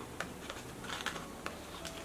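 A handful of light, irregular clicks and faint scuffing as a plastic card is worked into the tight zippered pocket of a small leather Coach card case.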